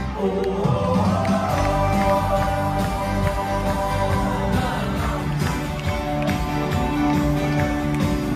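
Live band playing a folk-pop song on button accordion and acoustic guitar, with singing; held accordion and vocal notes over a steady strummed accompaniment.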